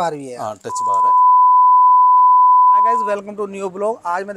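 A single steady electronic beep at one pitch, lasting about two and a half seconds, between bits of a man's speech. It is the kind of edited-in bleep used to cover a word.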